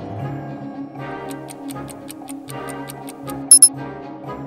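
Background music under a countdown-timer ticking sound effect, quick even ticks about six or seven a second starting about a second in. Near the end two loud, short, high beeps sound in quick succession, marking the countdown running out.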